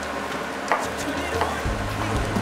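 Kitchen knife slicing button mushrooms into thick pieces on a cutting board: two crisp knife strokes down onto the board, under a second apart.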